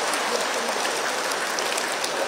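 Crowd of schoolchildren clapping: a steady, even patter of many hands.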